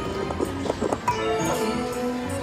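Slot machine's electronic game music playing, with a quick run of clunks about half a second to a second in as the reels stop during a bonus spin.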